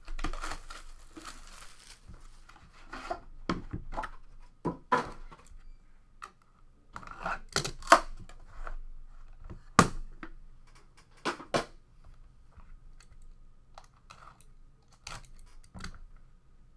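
A trading-card box being opened by hand: wrapping torn off at the start, then cardboard lid and box handling with scattered scrapes and short knocks, the sharpest about eight and ten seconds in.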